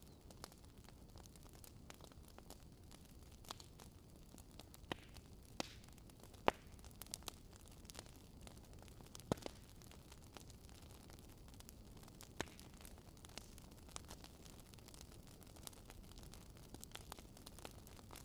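Faint static hiss with scattered sharp clicks and crackles at irregular intervals.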